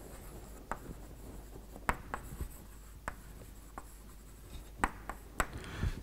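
Chalk writing on a blackboard: irregular sharp taps and short scratches as letters are written.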